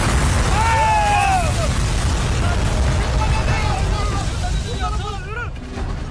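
A big explosion goes off right at the start, its rumble slowly dying away, with men's yells over it about a second in and again near the end.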